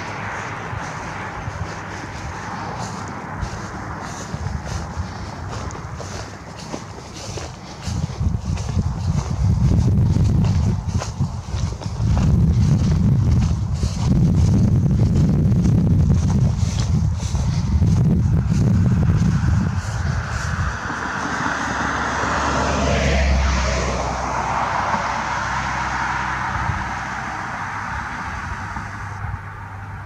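Wind rumbling on the microphone outdoors for about twelve seconds in the middle, then a vehicle passing, swelling and fading about two thirds of the way through.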